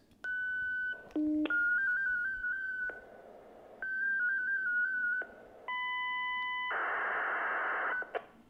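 Fldigi digital-mode data transmission in 8PSK1000 sent over ham radio, heard as a string of electronic tones: a steady beep, a short low tone, two runs of a tone stepping quickly up and down in pitch, a chord of steady tones, then about a second of hiss-like data signal. The whole message goes out in about eight seconds.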